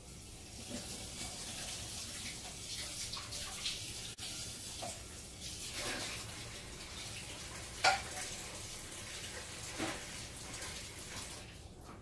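Kitchen tap running into a sink as a plate is rinsed, with a couple of knocks, the louder one about eight seconds in.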